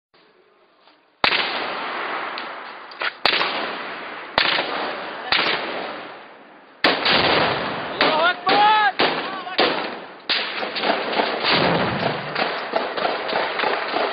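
Gunfire in a firefight: single rifle shots about a second or two apart, each with a long echoing tail, then quicker shots from about eight seconds in, with a man shouting among them.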